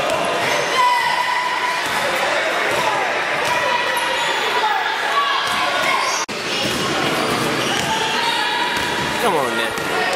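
A basketball being dribbled and sneakers squeaking on a hardwood gym floor, with voices of players and spectators echoing through the hall. There is a brief dropout in the sound a little past six seconds in.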